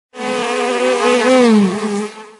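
Buzzing of a bee, used as a sound effect, its pitch wavering up and down and dipping near the end.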